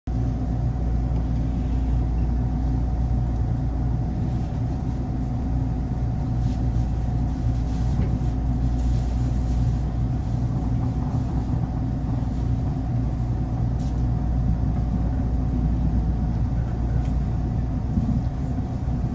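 Steady low hum and rumble inside a Taiwan Railway EMU900 commuter train car, with several steady tones from the car's running equipment.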